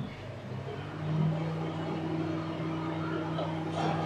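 Microwave oven running a cooking cycle at the start of a seven-minute cook: a steady low electrical hum that grows stronger about a second in and then holds even.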